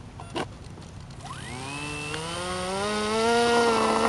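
Electric motor and propeller of a Wiggy (WG1) RC model plane spooling up for takeoff: a buzzing whine that starts about a second in, rising in pitch and getting louder, then holding steady at speed. A brief click comes just before it.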